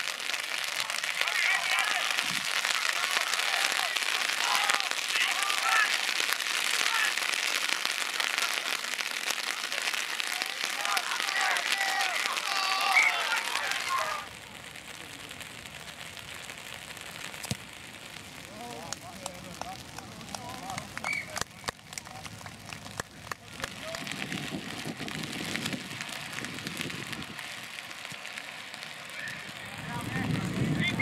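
Players shouting and calling on a rugby pitch over a steady hiss. About fourteen seconds in the sound cuts to quieter open-field ambience: low wind rumble on the microphone, faint distant voices and a few sharp knocks.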